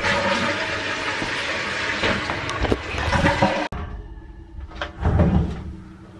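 Toilet flushing: a loud, even rush of water that cuts off abruptly after about three and a half seconds. A quieter stretch follows with a dull low thump.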